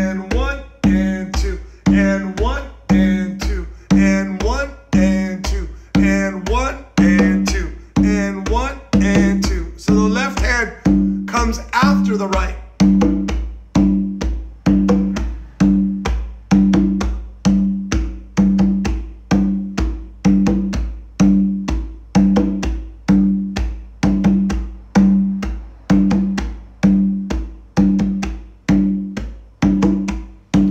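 Conga played by hand in a steady, repeating samba-reggae rhythm: a deep bass stroke in the centre of the head, like a surdo, alternating with open tones from the right hand.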